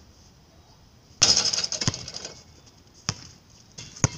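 A basketball shot coming down at a portable hoop: a sudden loud rattling crash about a second in that dies away over about a second, then the ball bouncing on the asphalt, a single knock twice.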